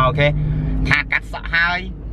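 A man's voice in short stretches over the steady low rumble of a car driving, heard from inside the cabin.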